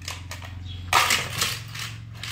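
A Hot Wheels car launcher snaps about a second in, then the small die-cast car clatters along the plastic track and loop.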